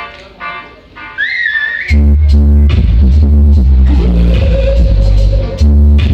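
Dub reggae playing loud through a sound system. For the first two seconds the bass drops out, leaving repeated chord stabs and a short wavering whistle-like tone. Then the heavy bassline and drums crash back in and run at full level.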